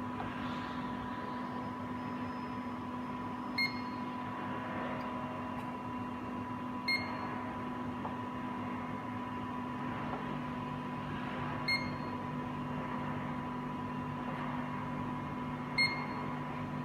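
Zeiss Contura coordinate measuring machine giving four short beeps, one each time its probe touches the wall of a bore and records a point while a circle is being measured. A steady electrical hum runs underneath.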